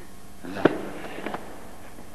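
A single sharp crack about half a second in, with two faint ticks a little later.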